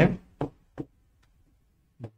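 Two short, sharp taps of a marker against a whiteboard while a word is being written, with the tail of a man's voice at the very start.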